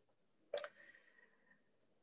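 Near silence broken by a single short click about half a second in, with a faint thin tone trailing after it for about a second.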